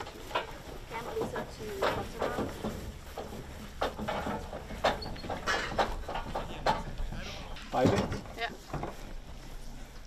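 Voices of several people talking and calling out while a small box trailer is pushed by hand over grass, with occasional knocks and rattles from the trailer.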